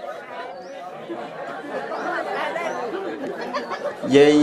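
Several voices talking at once, a jumble of overlapping chatter that grows louder toward the end.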